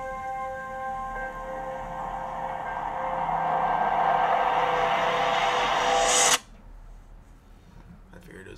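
Film trailer soundtrack: sustained music tones under a rush of noise that swells for several seconds, then cuts off suddenly about six seconds in.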